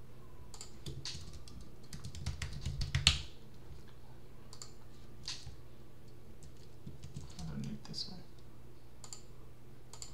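Computer keyboard being typed on: a quick run of keystrokes over the first three seconds ending in one hard press, then scattered single key clicks, over a steady low hum.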